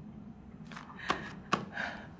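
Short breathy sniffs and two sharp clicks, about a second and a second and a half in, from a tearful man, over a low steady room hum.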